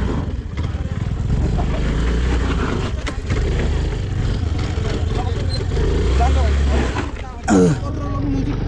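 Motor scooter engine running under load on a steep dirt trail, a continuous low rumble with rough knocking and rattling from the ride. A short voice sound comes near the end.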